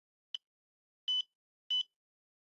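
Fingertip pulse oximeter beeping as it takes a reading: three short, high-pitched beeps at uneven intervals, the first one shorter and fainter, each sounding with a detected pulse.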